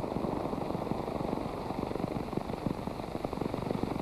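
Steady rumbling, crackling background noise of an old film soundtrack, with no music or voice.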